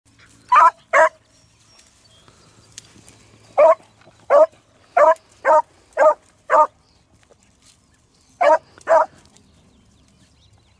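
A beagle barking while trailing a rabbit by scent, giving tongue as it works the line: ten short, loud barks in three bursts, two near the start, a run of six in the middle and two more near the end.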